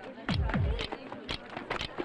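Film background score: a pair of deep drum hits that drop in pitch, followed by lighter percussive ticks.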